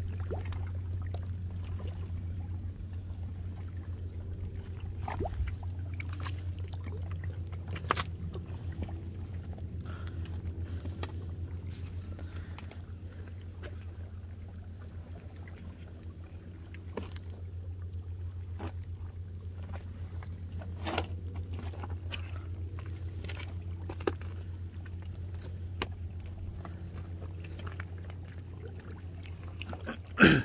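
A steady low motor drone runs throughout, under a few sharp knocks and scrapes of rubber boots stepping over wet, barnacled rocks.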